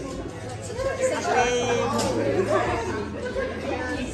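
Group chatter: several women talking over one another at a dining table.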